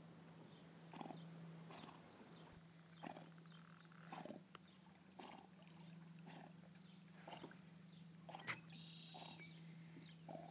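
A dog breathing hard through its nose while swimming with a ball in its mouth: faint, short puffs roughly every second, over a steady low hum.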